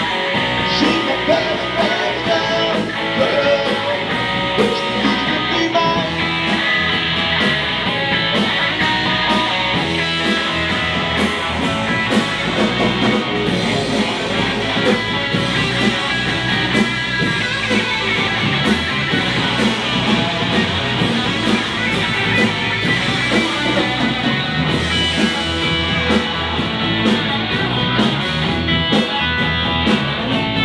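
Live rock band playing loud amplified music with no singing: guitar over bass and a steady drum-kit beat.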